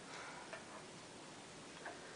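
Quiet room tone with two faint, brief ticks: one about half a second in and one near the end.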